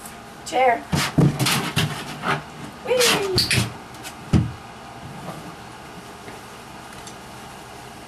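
Plastic rocker gaming chair knocking and bumping on carpet as a Border Collie puppy tugs and pushes it over, ending in a single low thud about four seconds in. Short voice-like cries come near the start and about three seconds in.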